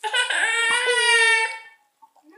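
A young girl's voice in one long, high, drawn-out whine, held steady for about a second and a half before it cuts off.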